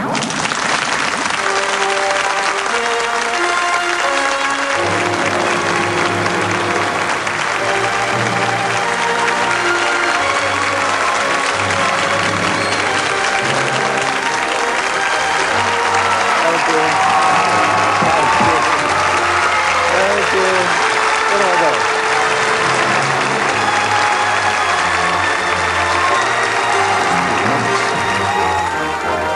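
A studio audience applauding steadily while a band plays entrance music, the bass part coming in about four or five seconds in.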